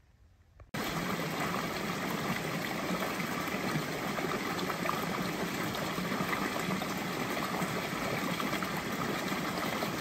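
Small creek running over rocks in a little cascade: a steady rush of water that starts suddenly less than a second in.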